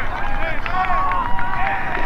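Many voices shouting and cheering at once, overlapping, with one long steady held note starting about halfway through.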